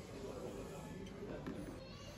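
Indistinct voices with background room noise, including a short, higher-pitched voice-like call partway through.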